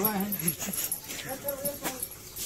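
People's voices talking, with a single sharp click near the end.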